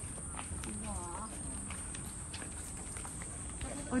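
Footsteps on a paved path: scattered faint clicks of shoes as people walk, with a faint voice in the background about a second in.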